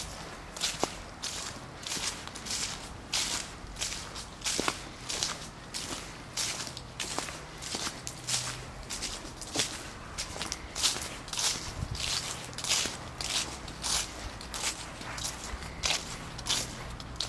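Footsteps of a person walking at a steady pace over grass strewn with fallen leaves, each step a short swish or crunch, a little under two steps a second.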